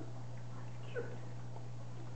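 Four-week-old puppies giving a couple of faint, short squeaks, near the start and about a second in, over a steady low hum.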